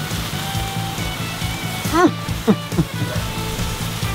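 Background music with a steady low accompaniment, and a man's short 'mm' of approval about two seconds in.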